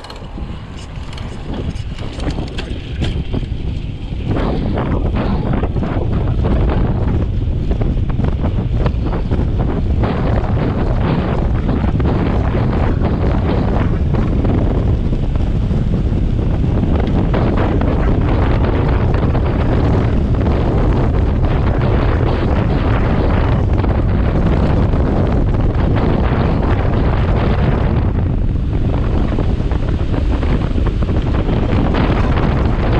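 Wind buffeting a GoPro camera's microphone on a mountain bike descending fast on asphalt: a loud, steady rumble that builds over the first four seconds as the bike gathers speed.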